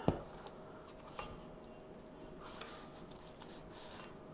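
Faint handling sounds of hands stretching and folding sourdough dough in a stainless steel bowl: a sharp knock on the bowl just after the start, then a few soft ticks and quiet rustles, over a steady faint hum.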